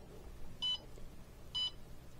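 Bartlett RTC-1000 kiln controller's keypad beeping as its buttons are pressed: two short high beeps about a second apart, each acknowledging a key press.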